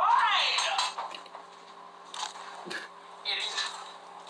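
A brief drawn-out voice sound at the start, then a few short clinks and knocks of a cooking pot and utensils at a kitchen stove.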